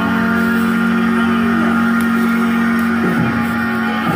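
Harmonica playing a long held chord, played inside a car with some vehicle noise underneath; the notes slide briefly about three seconds in.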